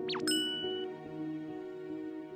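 Sound effects and music for an animated logo: a quick falling swoop, then a bright ding chime about a quarter second in, over soft sustained background music.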